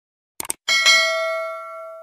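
A quick double click, then a notification-bell ding that is struck twice in quick succession and rings out, fading over about a second and a half. This is the sound effect of a subscribe button being clicked and its notification bell being rung.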